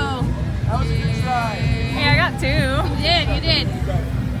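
A voice singing or warbling with a fast, wavering vibrato, the pitch swinging up and down in long held notes, over a steady low rumble.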